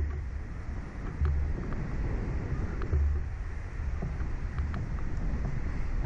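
Wind buffeting the microphone of a camera mounted on a swinging reverse-bungee ride capsule: a steady rush with low rumbling gusts every second or two.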